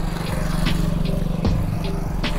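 Motorcycle engine idling steadily with a low, even hum.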